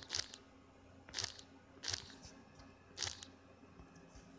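Pages of a book being turned: four short, crisp paper rustles about a second apart, as someone leafs through to find a passage.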